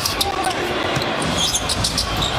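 A basketball being dribbled on a hardwood court, with a few short high-pitched ticks toward the end, over steady arena background noise.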